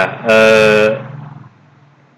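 A man's voice holding one drawn-out hesitation vowel, a steady 'uhh' lasting about half a second, after which it drops to a low background.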